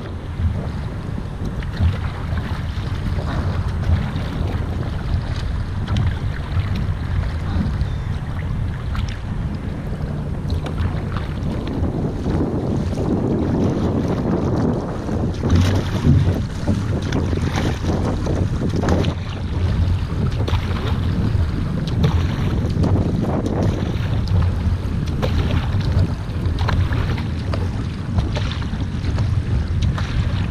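Surfski paddle strokes splashing into the water one after another, over a steady low rumble of wind on the microphone and water rushing along the hull of the Epic V10 Sport surfski.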